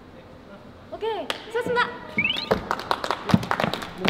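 A few people clapping in a quick, irregular run over the last second and a half, after short voiced calls and a brief rising whistle-like glide about two seconds in.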